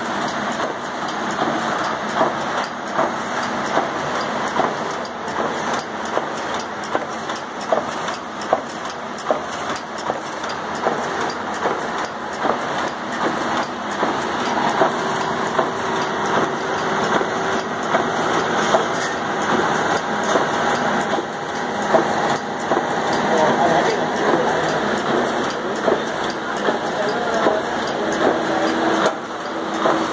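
Long incense-stick extruding machine, driven by a 3 hp three-phase motor, running with a steady mechanical noise and frequent light clicks and knocks.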